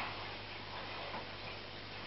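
Steady low hum under a faint hiss from running aquarium equipment, with light ticking.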